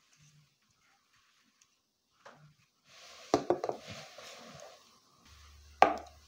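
Handling noise from a mirrorless camera being handled and set down on a glass-topped kitchen scale: after a quiet start, a cluster of quick clicks and knocks midway, then one sharp knock near the end.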